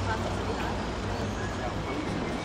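Street ambience: passers-by talking, over a low steady rumble that weakens about half a second in.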